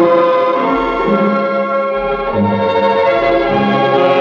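Light orchestral music: held chords over a bass line on a steady beat.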